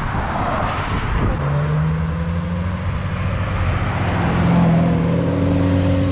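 A motorcycle passing on the road: its engine note holds steady and grows louder as it approaches, over tyre and road noise from passing traffic.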